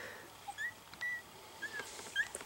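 Very young miniature schnauzer puppies squeaking faintly: three short, high-pitched squeaks.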